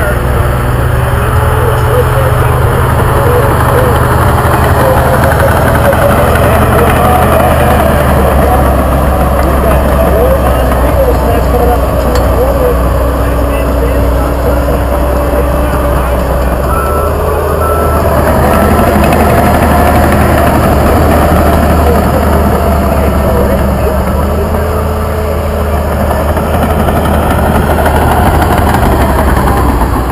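John Deere 450J LGP crawler dozer's diesel engine running steadily under load as it pushes dirt, its note rising and falling with the throttle.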